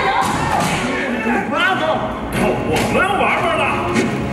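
Shouted yells and grunts from a staged stunt fight, with thuds of bodies and blows.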